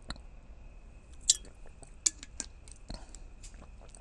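A person sipping and swallowing water, with a scatter of small wet mouth clicks. The sharpest come a little over a second in and just after two seconds.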